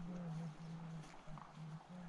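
A low-pitched voice sounding one held note, then a few shorter notes with gaps between them.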